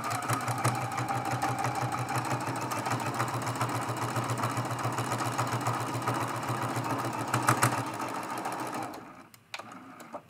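Juki sewing machine stitching steadily at speed along a seam, with a fast, even rhythm. It stops about nine seconds in, followed by a light click.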